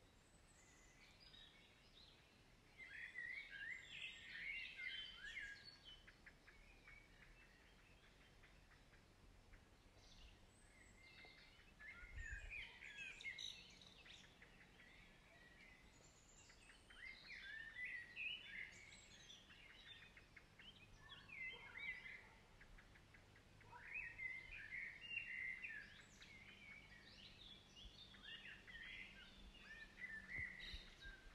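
Songbirds chirping and singing in short bursts every few seconds over a faint background hiss.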